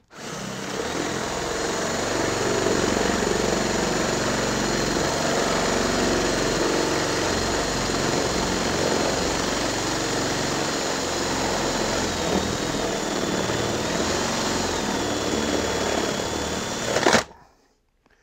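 18 V cordless drill boring through the wooden base of a molding box with a spade bit: a steady motor whine over the rough noise of the bit cutting wood. The whine sags in pitch a couple of times in the second half as the bit loads up, and the drill stops suddenly near the end.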